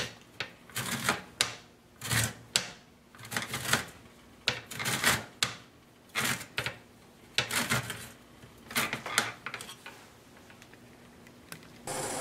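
Orange peel being rubbed over a flat metal grater for zest: repeated short scraping strokes, about one or two a second, that die away about two seconds before the end.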